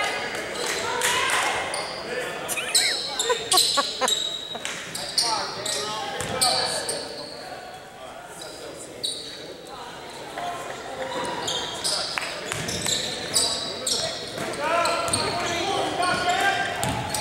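Basketball game in a large, echoing gym: players' voices calling out and a basketball bouncing on the hardwood floor. It quietens for a few seconds near the middle, then gets busier again as play resumes.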